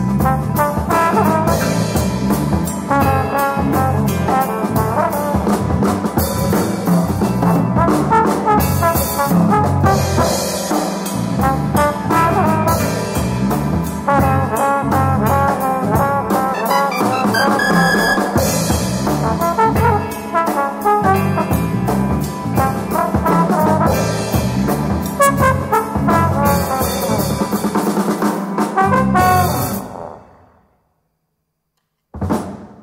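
Jazz trombone carrying the melody over electric keyboard and a drum kit, the trio playing in full.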